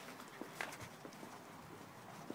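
A few faint light taps and scrapes as a puppy paws and scrabbles at an object on paving stones.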